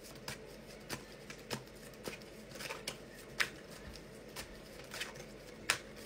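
A deck of tarot cards being shuffled by hand: a string of irregular short snaps and slides of card on card, with sharper snaps about three and a half seconds in and again near the end.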